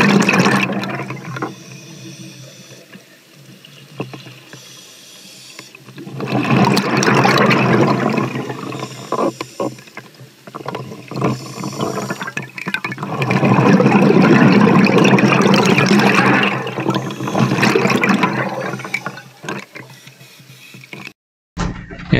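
Scuba diver's exhaled bubbles rushing out of an open-circuit regulator underwater, in long surges about every six or seven seconds with quieter stretches between.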